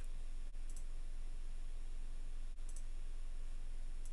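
Two faint computer mouse clicks about two seconds apart, over a steady low hum and hiss.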